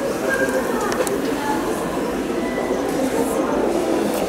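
Steady background hubbub: indistinct distant voices over constant room noise.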